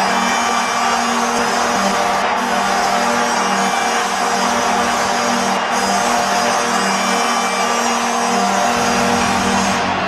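Madison Square Garden goal horn sounding steadily over a cheering arena crowd for a New York Rangers goal, stopping near the end.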